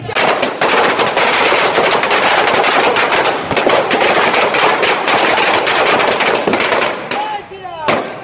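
A long string of firecrackers going off in a rapid, unbroken run of bangs for about seven seconds, then stopping, with one more single bang at the very end.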